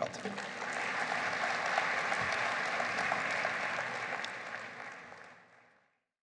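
Audience applauding, a steady clatter of many hands that fades away about five seconds in.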